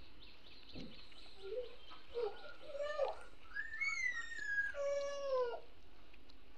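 Faint animal calls in the background: a run of short pitched cries that glide up and down, ending in two longer falling ones.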